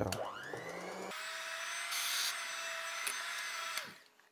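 Electric hand mixer whisking batter in a bowl: the motor spins up with a rising whine, runs steadily, then winds down and stops near the end.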